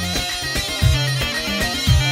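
Dabke music led by a mijwiz, the reedy double pipe, over a heavy drum beat that falls about once a second.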